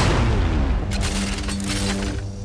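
Trailer sound design: a heavy boom hit with falling tones at the start, then a quick run of sharp cracks about a second in, over a held music drone.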